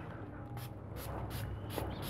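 Small hand-pump spray bottle misting diluted medicine onto a young pigeon's wing feathers. It gives several short, soft spritzes in quick succession.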